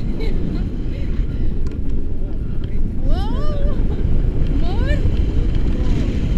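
Wind buffeting the microphone of a camera on a selfie stick during a tandem paraglider flight, a steady rumble throughout. A voice gives two sharply rising calls, about three and five seconds in.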